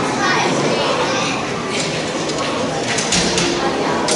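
Many voices of a crowd talking and calling out at once, echoing in a large hall, with a few sharp knocks about three seconds in.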